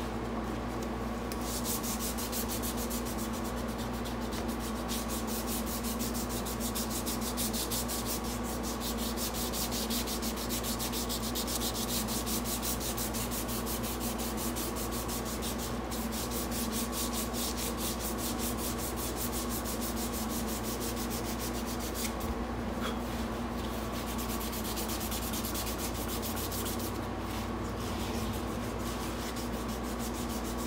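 Sandpaper worked back and forth by hand along a knife handle clamped in a vise, in fast, even strokes, with two brief pauses in the last third. A steady hum runs underneath.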